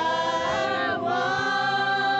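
A group of mixed voices singing together a cappella, holding long notes in harmony, with a change of note about a second in.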